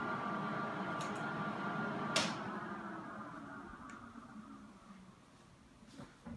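The cooling fans of a rack-mount RAID disk array whine steadily until its power-supply switches click off, faintly about a second in and sharply about two seconds in. The fans then spin down and fade away as the array shuts off.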